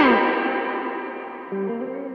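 Electric guitar playing a blues phrase. A loud bent note is released downward and left to ring out and fade, then a quieter second note with a slight bend comes in about a second and a half in: loud-quiet blues dynamics.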